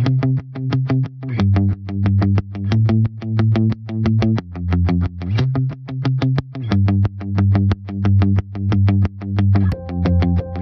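Background music: a distorted electric guitar playing a fast, even rhythm of chords over a low bass line whose notes shift every couple of seconds.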